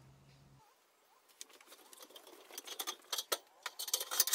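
Quiet, irregular light clicks and taps that grow busier toward the end: hands and feet on an aluminium ladder.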